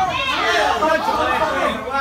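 Several voices shouting and talking over one another, unintelligible: onlookers around the cage calling out.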